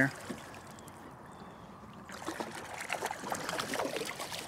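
Water splashing and sloshing at the surface beside a kayak as a hooked bass thrashes and is scooped into a landing net. The splashing starts about two seconds in and grows louder and more irregular.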